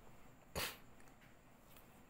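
A single short cough from a man with flu, about half a second in.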